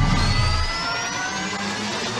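Intro music and sound effect for an animated logo: several tones gliding slowly upward over a rising hiss-like swell, with a deep low rumble fading out about two-thirds of a second in.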